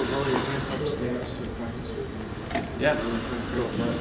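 Voices talking in the room while a cordless drill runs at a guitar's tuning post, winding on a string.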